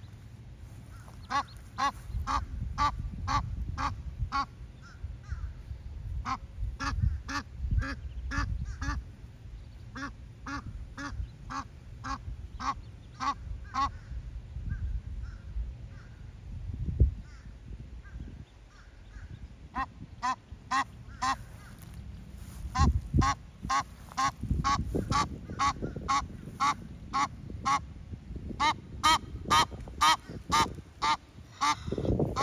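Egyptian goose calling in long runs of short, harsh honks, two or three a second, pausing for a few seconds midway and then starting again. A low rumble lies underneath, with a thump about 17 seconds in.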